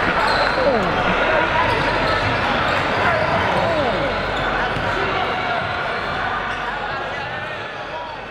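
Gymnasium crowd noise at a basketball game: many voices talking and calling at once, echoing in the hall and slowly getting quieter.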